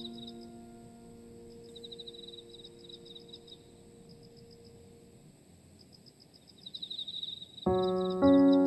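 Slow piano music: held piano notes fade away over the first few seconds, leaving crickets chirping in short rapid trills over a faint background, before a new piano chord comes in near the end.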